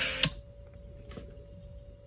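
Music from a video playing on a tablet cuts off as it is paused, with a sharp tap on the touchscreen about a quarter second in. After that there is only quiet room tone with a faint steady hum and a light tick about a second in.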